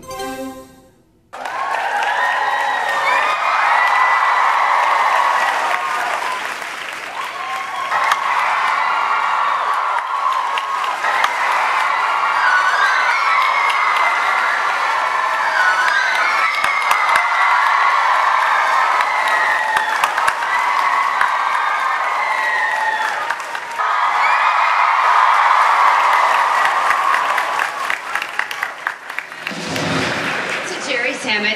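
A large audience applauding while a live band plays. Both start about a second in.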